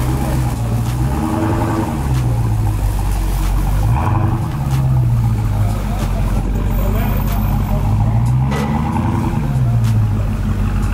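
A Dodge Charger's V8 engine running and blipped several times, its pitch rising and falling with each rev.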